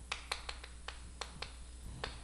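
Chalk writing on a chalkboard: a series of faint, irregular chalk taps and clicks against the board, about seven in two seconds.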